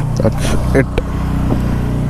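Motorcycle engine idling steadily with a low, even hum, with brief fragments of voice over it.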